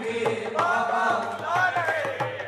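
Devotional chanting sung by a man through a microphone and PA, over steady rhythmic hand clapping, several claps a second.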